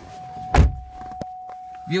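A heavy, deep thump about half a second in, typical of a pickup truck's door being shut from inside the cab, followed by two light clicks. A steady thin high tone runs underneath.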